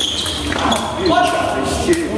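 Players' voices calling out in an echoing sports hall, with the sharp thud of a sepak takraw ball being kicked just before the end.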